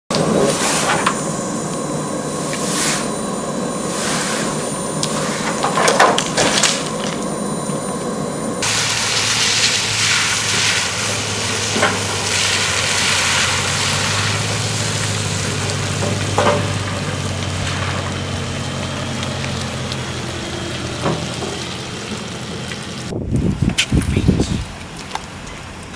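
Steady flight-line machinery noise: a low engine hum under a hiss, with a few sharp knocks in the first seconds. About a third of the way in the sound changes abruptly to a fuller, steady low hum.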